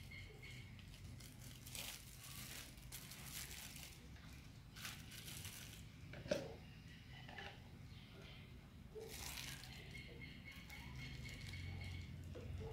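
Thin plastic freezer-pop bag crinkling faintly in a few short bursts as it is handled and fitted onto a plastic funnel, with one light knock about six seconds in.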